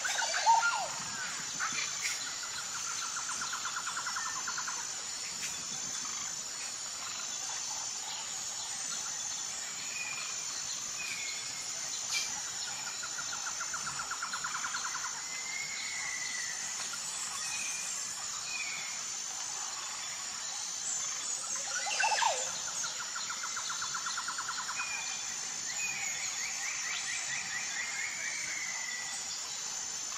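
Birds calling: short whistled notes and a trill repeated three times, over a steady high-pitched insect drone. The loudest calls come right at the start and about 22 seconds in.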